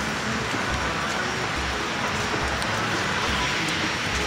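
Steady rain falling, a constant even hiss, with an uneven low rumble on the phone's microphone.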